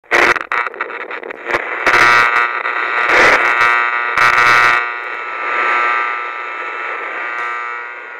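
A loud, steady buzzing drone of several tones, broken by crackling bursts of noise in the first five seconds, then slowly fading away.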